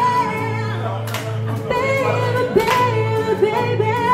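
A woman singing live into a microphone, holding long notes with vibrato, over a hollow-body electric guitar strumming slow chords about every one and a half seconds.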